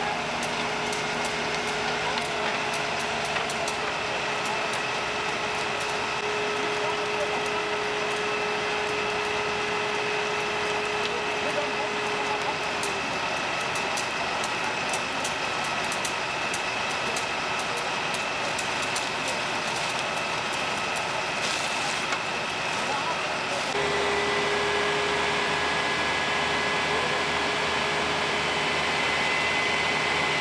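Fire engines' engines and pumps running steadily, with scattered sharp clicks and indistinct voices over them. The sound shifts abruptly about three-quarters of the way through, to a slightly louder engine tone.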